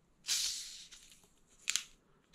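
Screw cap twisted off a plastic bottle of carbonated soda: a short hiss of escaping gas that fades within a second, then a short sharp click near the end.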